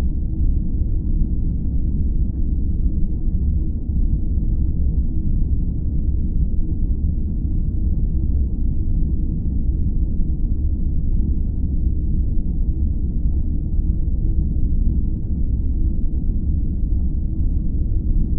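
A steady, deep rumble with no beat, melody or separate strikes, holding an even level throughout.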